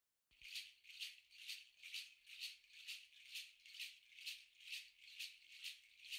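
A rattle or shaker shaken in an even rhythm, a little over two shakes a second, faint and thin-sounding.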